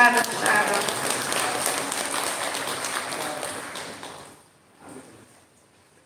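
Audience clapping, a dense patter of many hands that fades out about four seconds in.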